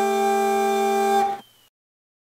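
Bagpipes holding one final sustained chord of closing music, the drones and chanter note steady, then cutting off about a second and a half in.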